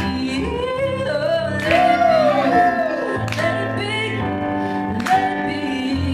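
A woman singing live into a microphone over her own keyboard accompaniment, with a new chord struck roughly every second and a half to two seconds under a gliding vocal line.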